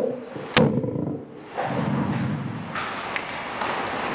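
A single sharp thump about half a second in, typical of a handheld microphone being knocked while it is handled, then a softer stretch of low noise.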